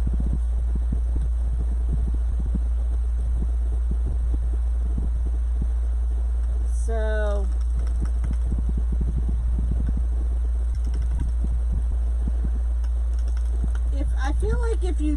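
A wood burning tool's hot tip is drawn through plastic deco mesh on a cutting mat, giving faint, irregular scratchy crackles as it melts a cut line. Under it runs a loud, steady low hum, and a brief vocal sound comes about seven seconds in.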